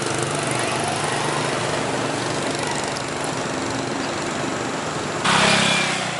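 Motorbike and scooter traffic on the street, a steady engine drone, with a louder rush of noise about five seconds in.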